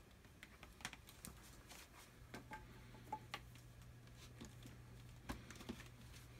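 Faint, scattered light clicks and taps of half-inch PVC pipe and elbow fittings being handled and pressed together, over a faint low steady hum that comes in about two seconds in.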